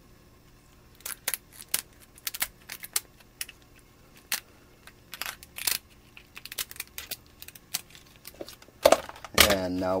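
Kitchen scissors snipping through a lobster tail's shell: a run of irregular sharp clicks and crunches.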